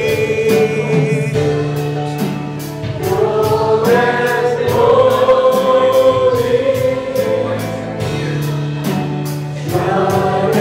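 A congregation sings a gospel worship song together, holding long notes over instrumental accompaniment with a steady low bass and a regular beat.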